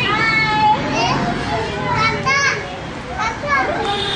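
Young children's high-pitched voices calling out as they play, with one long high call near the start and shorter calls after it.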